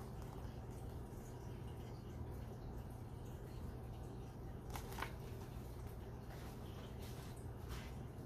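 Quiet room tone with a steady low hum, broken by a few faint short clicks from a hardcover picture book being handled, a pair about five seconds in and one near the end.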